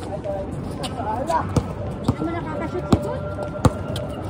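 A basketball bouncing on a hard outdoor court during play, a few sharp, irregularly spaced bounces, with players' voices calling out in the background.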